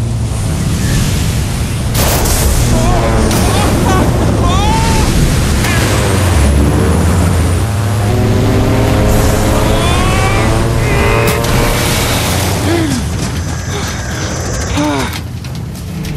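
Film storm sound mix: a small propeller plane's engine droning steadily through wind and rain noise, with sharp thunder cracks about two seconds in and again around eleven seconds. A character's wordless straining cries and grunts rise and fall over it.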